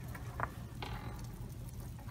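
Quiet background: a low steady rumble with two faint clicks, about half a second and about one second in.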